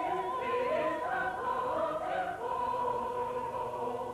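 Operetta music: a high note held with vibrato, then a chorus singing with the orchestra, and another high held note in the second half.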